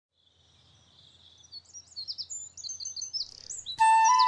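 Birdsong fading in: quick, high chirping notes that grow steadily louder. Just before the end, music comes in abruptly and is the loudest sound.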